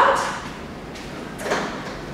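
A short sliding knock from a Pilates reformer being moved or shifted, about one and a half seconds in, over faint room noise.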